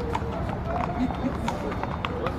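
Crowd of onlookers talking in the open air, with scattered sharp taps a few times a second over a steady low rumble.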